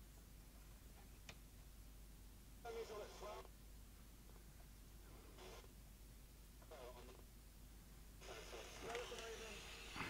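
A cheap Silvercrest DAB/FM kitchen radio's small speaker giving brief, faint, thin-sounding snatches of broadcast sound as it is tuned across the FM band, struggling to lock onto a station: about four short bursts with near silence between, the longest near the end. A light click about a second in.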